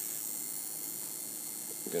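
A running high-voltage spark-gap circuit, making a steady electrical hiss and buzz with no breaks.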